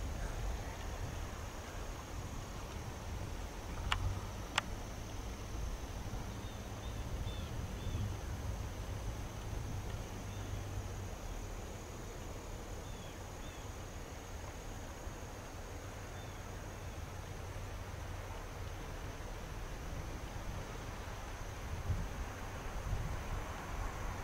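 Outdoor field ambience: a steady faint high-pitched drone like insects, over a low wind rumble on the microphone. Two sharp clicks about four seconds in, and a few faint chirps.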